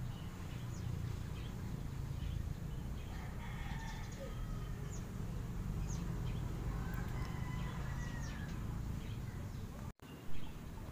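Faint distant bird calls over a steady low background hum, with one longer call about three seconds in and a drawn-out gliding call about seven seconds in.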